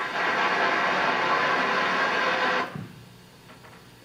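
Applause from the audience in a council chamber, heard from an old videotape played back over the room's speakers. It runs for under three seconds and cuts off suddenly, then only faint room sound remains.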